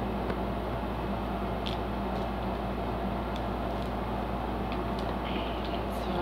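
Steady low mechanical hum with an even background hiss, the constant noise of a small room, with a few faint light clicks scattered through it.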